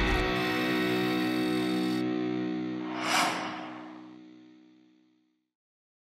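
Music ending on a sustained electric guitar chord that rings and fades out over about five seconds, with a short hissing swell about three seconds in.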